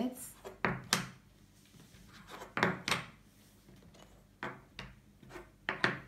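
Wooden game discs knocking and clicking against a wooden tabletop as they are picked up and turned over, in a series of light, separate knocks.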